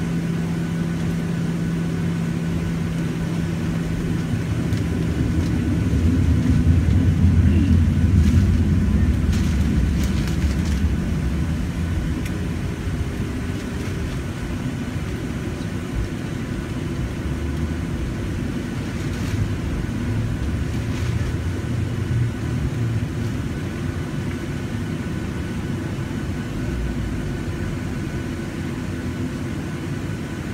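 Jet airliner cabin noise while taxiing: a steady engine hum and low rumble, which swells louder for a few seconds about six seconds in and then settles back.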